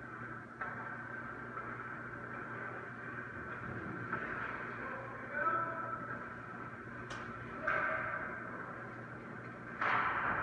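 Indoor ice rink sound: a steady hum with scattered sharp clicks and skate or stick noises on the ice, then a sudden sharp crack just before the end as a player shoots the puck.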